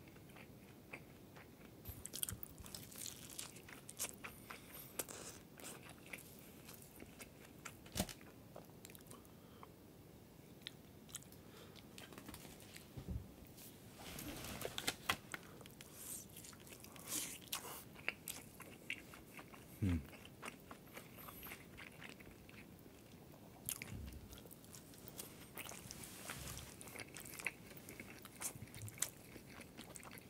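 Close-miked eating: crisp bites and chewing of breaded, deep-fried cheese tonkatsu, many crunches in a row. There is a short hummed "mmm" about twenty seconds in.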